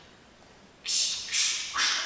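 Three short hissing 'tss' bursts, spaced about half a second apart and starting about a second in, are voices imitating cymbal crashes in a vocal drum-kit routine.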